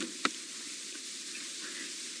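Steady background hiss with one short click about a quarter of a second in.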